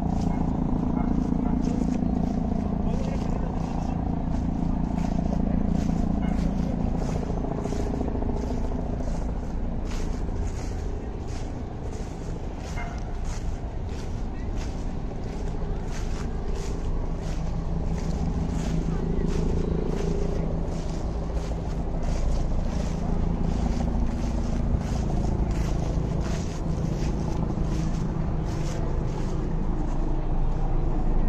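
Busy park ambience: a steady low city-traffic rumble under indistinct voices of passers-by, with crisp crunching steps about twice a second, like footsteps through dry fallen leaves.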